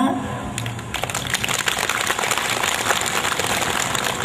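Audience applauding: a dense, even clatter of many hands clapping that starts about half a second in and keeps up steadily.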